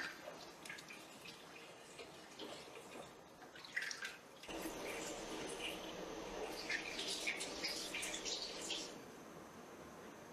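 Soup simmering in a ceramic clay pot on a gas stove: soft, irregular bubbling and popping, faint at first and growing fuller about four and a half seconds in before dying down near the end.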